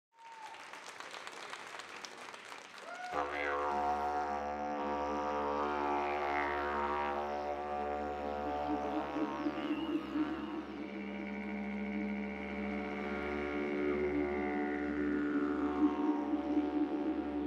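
Didgeridoo drone starting about three seconds in: a deep, steady, pulsing tone with many overtones that shift and sweep as the player works the sound. Before it there is only low background noise.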